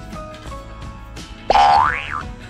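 Light background music, with a loud cartoon slide-whistle sound effect about one and a half seconds in: a whistle that glides up in pitch and then briefly back down.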